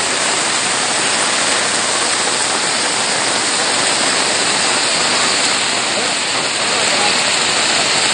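Heavy rain pouring down onto a flooded street: a loud, steady hiss of rain hitting standing water.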